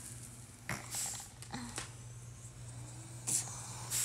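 A few short rustles and clicks, as of handling, over a low steady hum.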